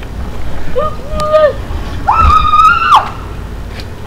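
A high-pitched voice making two wordless cries: a short one about a second in, then a longer, higher one about two seconds in that lasts about a second.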